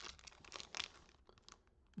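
Faint handling of hard-plastic graded-card slabs: a few short clicks and rustles as a slab is lifted from the stack and turned over in the hands.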